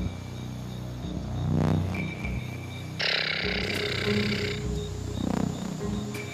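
Dramatic television background score: a sustained low drone that swells and fades, with a sudden hiss-like burst of noise about three seconds in that lasts about a second and a half.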